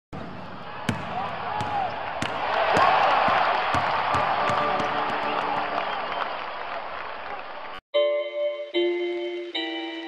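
A basketball being dribbled, sharp bounces every half second to a second over the murmur of an arena crowd. About eight seconds in it cuts off and chiming mallet-percussion intro music begins, struck notes in a repeating figure.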